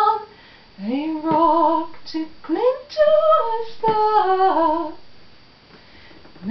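A woman singing unaccompanied. After a short pause her voice comes in with an upward slide and holds a slow line that steps down in pitch before fading out about five seconds in.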